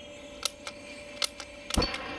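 A handheld lighter clicking several times at the nozzle of a propane weed torch, then a low thump near the end as the propane catches and the torch starts to burn.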